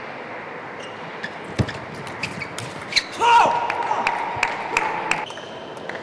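Table tennis ball clicking off bats and table in a fast rally, a sharp tick every fraction of a second. About three seconds in, a loud drawn-out voice cuts in and holds for about two seconds while a few more ball ticks sound.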